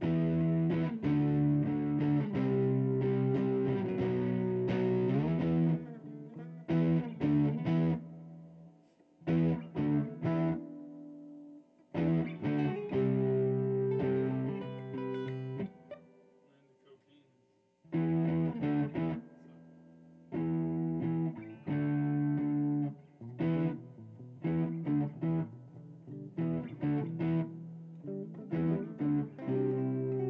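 Amplified electric guitar playing chords in stop-start phrases with short pauses between them, with a quiet gap of about two seconds in the middle.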